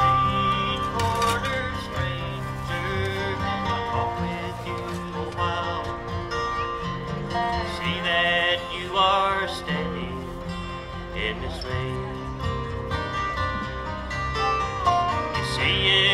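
Live acoustic bluegrass band of guitars, mandolin, banjo, dobro and bass playing the instrumental introduction to a song, with some sliding notes over a steady bass line.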